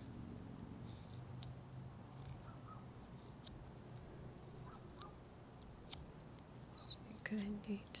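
A fingernail picks and scratches at a paper sticker on a plastic bottle, making a few faint, scattered ticks.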